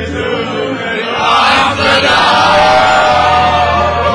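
A group of people singing along together to a Dutch song played over speakers, with a steady bass line under the voices. The singing swells louder about a second in.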